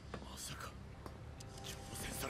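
Faint dialogue from the anime episode playing at low volume: a character's voice speaking a line.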